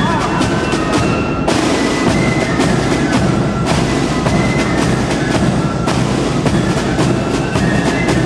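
Military band's side drums and bass drum playing a rapid, continuous marching beat.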